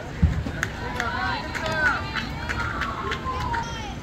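Several high voices shouting and calling over one another at a youth softball game, after a single low thump about a quarter second in.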